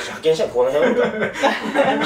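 Men talking and chuckling, with laughter breaking into the speech.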